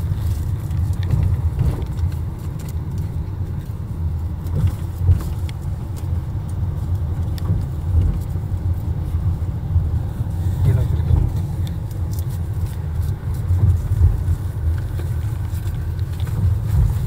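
Car cabin noise while driving: a steady low rumble of tyres and engine heard from inside the car, with a few faint clicks.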